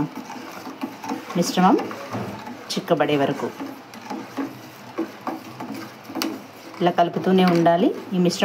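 A metal spoon stirring thick custard in a steel saucepan, scraping and clicking against the pan, with a voice talking at intervals.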